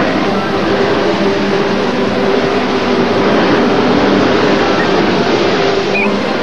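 Steady, loud rushing spray of water, a cartoon sound effect.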